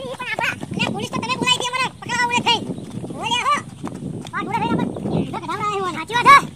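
Men shouting and yelling in high, pitched cries while running, in a string of short rising-and-falling calls.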